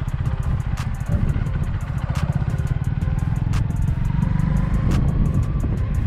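Honda CB125R's single-cylinder 125 cc four-stroke engine running as the motorcycle rides along in second gear, its note rising slowly in the second half.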